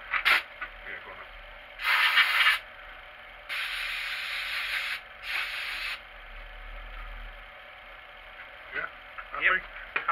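Three blasts of compressed air from an air blow gun, the middle one the longest, blowing out a hole in a metal part clamped in a machine vice.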